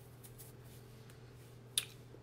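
A faint steady low hum, and a single short, sharp click near the end.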